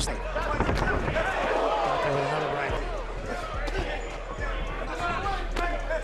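Boxing-match audio: gloved punches thudding at irregular intervals amid shouts from the arena, over a steady low bass hum.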